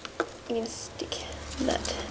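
A woman's voice in a few short murmured, half-whispered fragments, with light taps and rustles of paper being laid down and lifted on a cutting mat.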